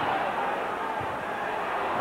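Football stadium crowd noise, a steady even murmur from the stands, with one short low thump about a second in.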